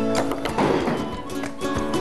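Background music with plucked guitar and a quick, even beat.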